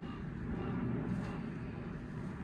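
Steady low outdoor background rumble, with no distinct event.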